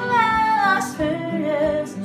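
A woman sings over two strummed acoustic guitars: a held note that slides slowly downward, then a lower note held with vibrato.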